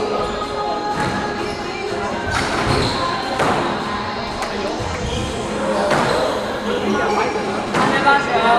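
A squash rally: the ball struck by rackets and hitting the court walls, a few sharp, echoing impacts one to two seconds apart, over a bed of background voices.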